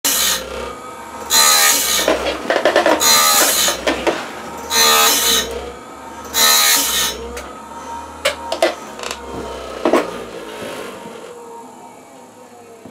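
Automatic band-blade sharpener grinding a sawmill band blade tooth by tooth: a short, ringing grind of the wheel against the steel about every second and a half. The grinding stops about seven seconds in, and a few sharp clicks follow.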